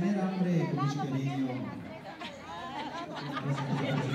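Several people talking at once, voices chattering over one another, with no clear words.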